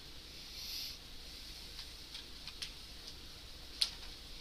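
Faint computer mouse clicks and scroll-wheel ticks, a few scattered soft ticks with one sharper click just before the end.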